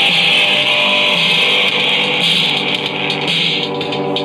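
Live electric guitar played loud and distorted through an amp, with a sustained, shrill feedback wash running under the chords.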